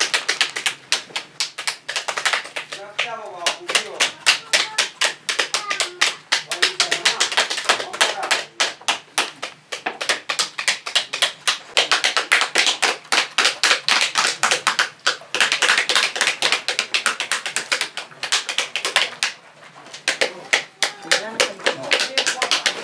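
Pomegranates being broken open by hand and their seeds knocked out into metal bowls: a dense, continuous run of sharp clicks and cracks, several a second, with a short lull near the end.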